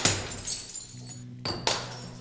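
A cymbal struck and left ringing over a low, steady amplifier hum, with two more sharp drum hits about a second and a half in.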